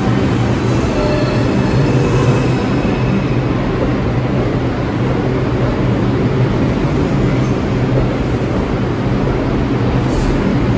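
An R142 subway train pulling out of the station and picking up speed as its cars pass close by, a steady running noise with a strong low rumble.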